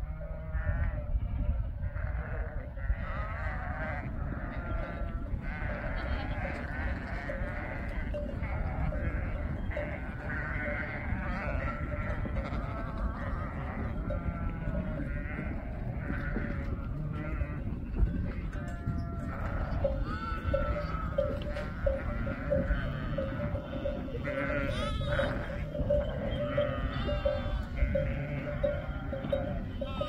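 A large flock of sheep and lambs bleating, many calls overlapping at once over a low rumble of movement. From about twenty seconds in, a steady tone runs under the bleating.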